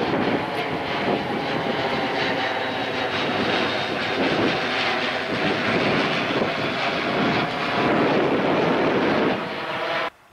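Diesel engines of a Merlo telehandler and a Fendt 720 Vario tractor running while the telehandler scoops and lifts a bucket of muck to load the spreader, the engine note swelling and easing as it works. The sound cuts off suddenly at the end.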